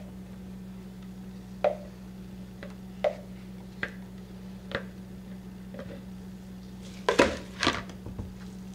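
Small clicks and knocks of a plastic pitcher and utensils while soap batter is drizzled into a silicone loaf mold, about four sharp ticks spread out, then a couple of louder clattering knocks near the end as the pitcher is set down and a spatula taken up. A steady low hum runs underneath.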